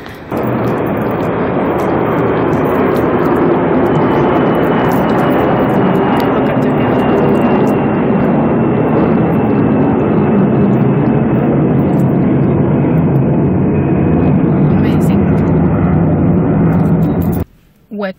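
Wind blowing across a phone's microphone, a loud steady noise that starts and stops suddenly.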